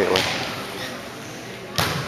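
A volleyball struck hard by hand once near the end, the serve, with the hit echoing in the gym. Before it, only low, diffuse hall noise.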